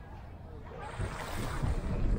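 Wind buffeting the microphone in low rumbling gusts that build from about a second in and are strongest near the end, over small waves lapping at the shore.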